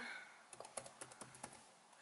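Faint typing on a computer keyboard: a quick run of about ten key presses, typing a search for the calculator app.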